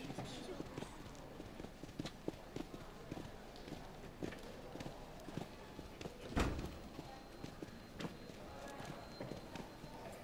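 Footsteps clicking on a hard floor, many light irregular steps. About six and a half seconds in there is one louder, deeper thump as a glass door with a metal bar handle is pulled open.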